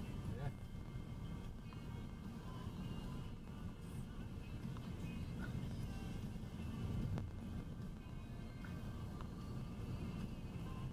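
Steady low rumble of tyre and engine noise heard inside a car's cabin while driving through a road tunnel, with faint music playing underneath.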